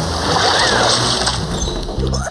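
Cartoon water-splashing sound effect, a loud splash lasting about a second as a swimmer vanishes beneath a pool's surface, over background music.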